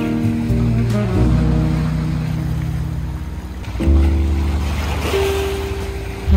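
Background music: held chords over a bass line, moving to a new chord about four seconds in.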